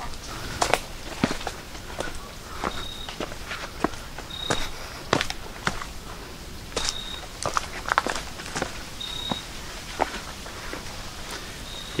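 Footsteps on a rocky hiking trail, uneven steps about once or twice a second. A short high chirp repeats about every two seconds.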